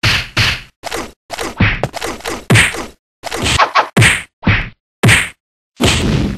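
Library fight sound effects: about ten punches and whacks in quick succession, each one cut off into dead silence before the next.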